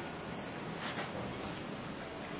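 Steady background hiss with a thin, high-pitched steady whine running through it, and one tiny faint chirp about a third of a second in.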